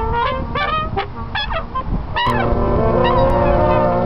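Brass instruments, trumpet among them, play a run of short honking notes that bend in pitch, then about two seconds in several horns come in together on a sustained chord.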